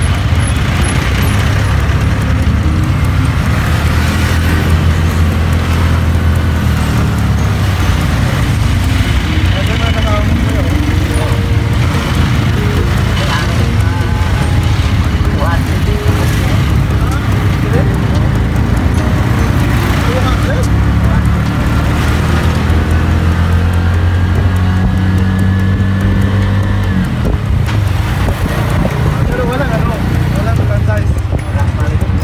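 Engine and road noise from inside a moving vehicle in city traffic: a loud, steady low rumble whose pitch shifts as the vehicle speeds up and slows, dropping near the end.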